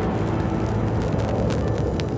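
Opening of a garage house 12-inch record playing on a turntable: a rushing, noise-like wash over a steady low hum, with scattered sharp clicks.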